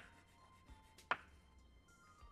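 Chalk writing on a blackboard: a few sharp, faint taps of the chalk as a word is written, the clearest at the start and another about a second in.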